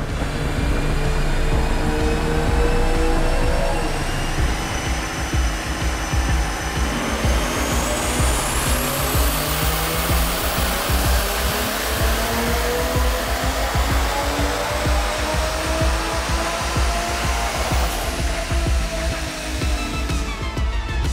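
Turbocharged 3.0-litre B58 inline-six of a 2020 Toyota GR Supra, fitted with a Garrett GTX3076R turbo and an Akrapovic titanium exhaust, making a full-throttle pull on a chassis dyno. The engine note climbs steadily for over ten seconds with a high whine rising with it, then drops away near the end as the throttle is released.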